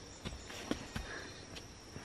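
Faint footsteps on a forest trail, a few soft scuffs and knocks about a second apart, over a steady high-pitched background tone.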